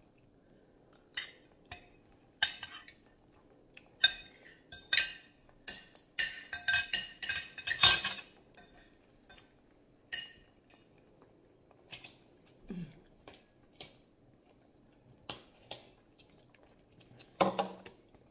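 Metal spoon and fork clinking and scraping against a dish of rice during a meal: a run of short, sharp clinks, busiest around the middle, then only a few.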